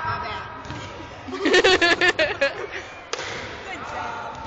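A girl's epic burp, with bursts of laughter about a second and a half in.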